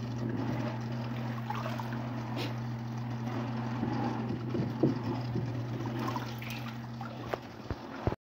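Water sloshing and splashing as a hand net is swept through a water-filled plastic barrel, with a louder splash near the end as the net is lifted out. A steady low hum runs underneath and cuts off shortly before the end.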